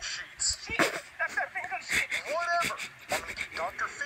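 High-pitched character speech from a puppet video, played through a small device speaker and re-recorded, with a few sharp clicks.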